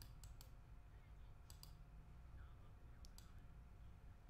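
Near silence broken by a handful of faint, sharp computer mouse clicks, a few in quick pairs.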